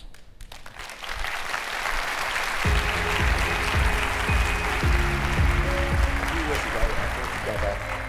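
Audience applause, joined about two and a half seconds in by background music with a heavy bass line.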